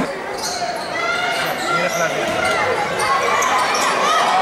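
Basketball game sounds in an echoing arena: the ball bouncing on the hardwood floor with short knocks, over the voices of players and spectators.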